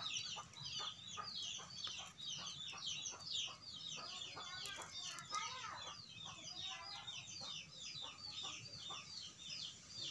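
Chickens calling without pause: a rapid run of short, high, falling notes, several a second, with lower clucks among them.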